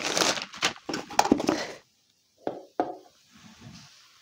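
Clear plastic bag crinkling as a boxed item wrapped in it is handled, for about the first two seconds. It cuts off suddenly; a couple of light knocks follow about a second later.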